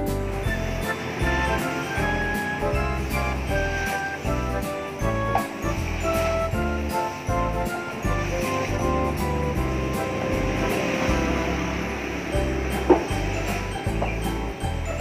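Background music playing over a steady hiss of a large batch of onde-onde (sesame balls) deep-frying in a giant wok of oil, with one sharp click near the end.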